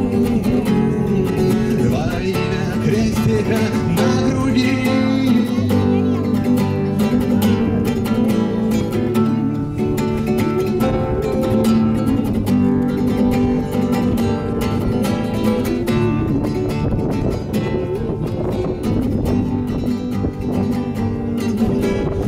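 Acoustic guitar played solo: an instrumental passage of plucked notes and chords running without a break between sung verses.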